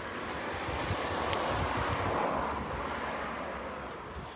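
A vehicle passing by on the road: its tyre and engine noise swells to a peak about two seconds in and then fades away.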